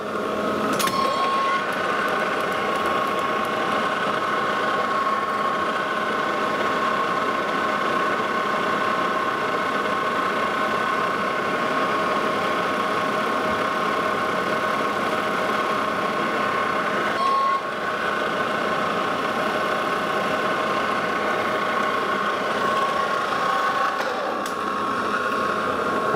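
Lodge and Shipley metal lathe running steadily with a constant whine, while a threading tool chamfers the corners of a steel hex-head bolt. The sound comes up about a second in and dips briefly about two-thirds of the way through.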